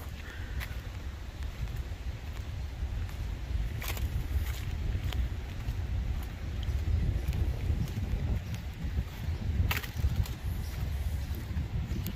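Wind rumbling on the microphone of a handheld camera as a person walks, with two sharp clicks, one about four seconds in and one toward the end.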